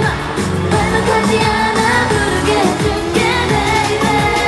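K-pop song performed live in concert: female group vocals over a pop backing track with a steady beat, played through the venue's PA.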